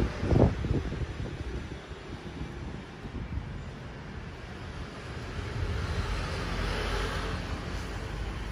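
Indistinct background rumble with a hiss that swells over the last couple of seconds.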